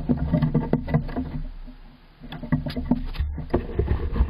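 Squirrel scrambling about inside a wooden nest box right next to the microphone: claws scratching and its body knocking against the wooden boards in dense clicks and bumps. The knocking eases briefly about halfway through, then picks up again.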